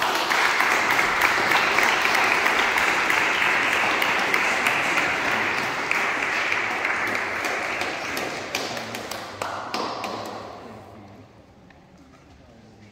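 Congregation applauding. It starts suddenly and dies away about ten seconds in.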